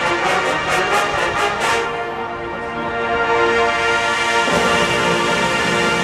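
College marching band playing on the field: full brass chords held over the percussion, with a run of sharp percussion strokes about four a second in the first two seconds and a change of chord about four and a half seconds in.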